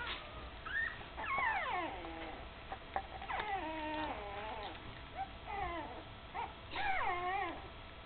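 Nearly three-week-old puppies crying: about four high whining calls, each sliding down in pitch, the first and last the loudest.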